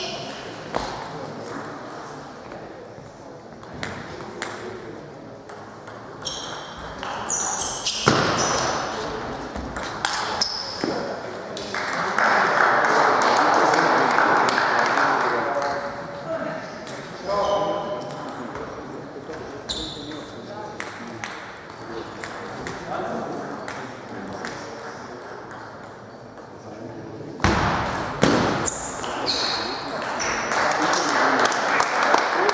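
Sports-hall ambience during table tennis play: scattered sharp clicks of ping-pong balls on bats and tables, with voices in the hall. A few seconds of louder, even noise rise about twelve seconds in and fade by sixteen.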